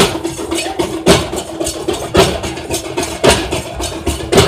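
Several large double-headed barrel drums beaten with sticks in a fast, steady beat, with a heavy accented stroke about once a second.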